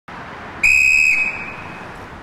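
A crossing guard's whistle: one short, steady, high blast of about half a second, trailing off afterwards, over steady street hiss. It is the signal for traffic to stop while children cross.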